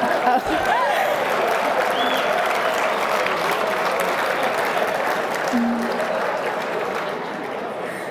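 Large seated audience in a banquet hall applauding, with a few voices calling out over the clapping. The applause eases off a little near the end.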